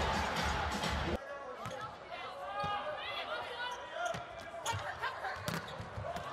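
Arena crowd noise that cuts off suddenly about a second in, then a volleyball rally on an indoor court: shoes squeaking in short rising and falling squeals, with several sharp smacks of the ball being hit.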